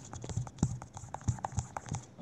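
A quick, irregular run of light taps and knocks, about four a second.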